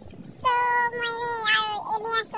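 A young woman's voice drawing out one long high-pitched vowel, held for about a second and a half and dipping slightly at the end.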